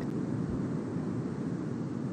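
Steady low roaring noise with no distinct events, heard through a live TV broadcast feed of the erupting Cumbre Vieja volcano.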